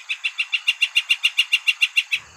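Northern flicker giving its long call: a rapid, even run of short notes at a steady pitch, about eight a second.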